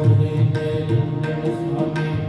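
Sikh kirtan: held harmonium chords over tabla, the low drum thumping and sharp strokes falling every few tenths of a second, with chanted singing.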